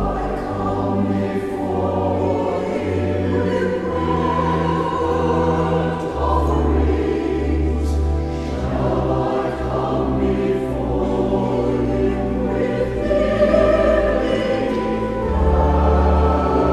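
Mixed church choir singing a sacred anthem to pipe organ accompaniment, the organ holding long low pedal notes under the voices.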